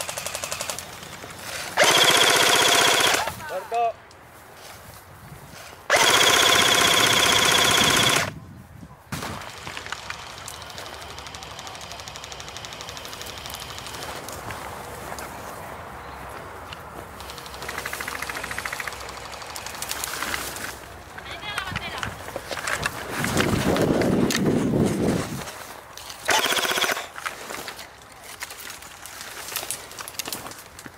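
Airsoft electric rifle firing full-auto bursts: a burst of about a second and a half about two seconds in, a longer burst of about two seconds about six seconds in, and a short one near the end.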